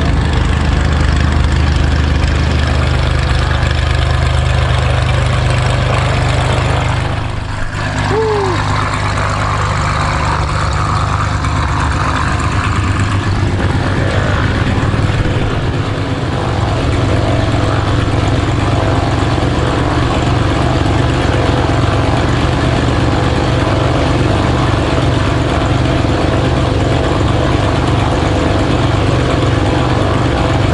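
Engine idling steadily, with a short break about seven seconds in.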